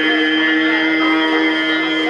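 Turkish folk song (türkü) performed live with bağlama (long-necked saz): the melody settles on one long note held steady.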